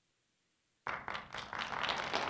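Dead silence for about the first second, then a room of people applauding starts suddenly and keeps going.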